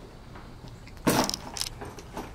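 A bag being set down on the porch: a brief rustle and clatter about a second in, followed by a couple of light clicks.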